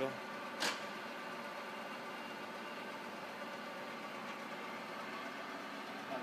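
Rosa vertical milling machine's power table feed running steadily, a constant mechanical hum as the table traverses on its feed, with one sharp click about half a second in.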